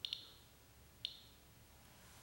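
SE Radiation Alert Inspector EXP Geiger counter clicking faintly at random: two clicks close together at the start and one about a second in, each click a single count of radiation from the ceramic tile under its probe.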